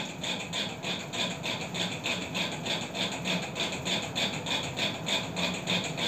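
A steady mechanical hum from a small motor, with a fast, even pulse of about four beats a second.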